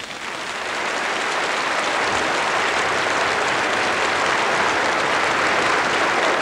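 A large concert audience applauding at the end of a big band number, swelling over about the first second and then holding steady.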